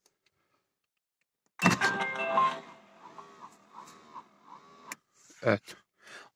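Aftermarket rearview-mirror reversing camera unit powering up as the ignition is switched on, playing a short electronic startup tune about one and a half seconds in, followed by softer wavering electronic tones.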